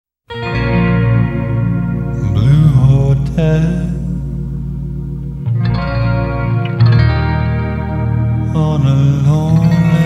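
Background music: a slow electric guitar drenched in chorus and echo, playing sustained chords with sliding notes over a low held bass.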